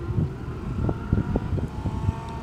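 Outdoor background rumble with wind buffeting the microphone and a faint steady whine, with a few soft low knocks about a second in.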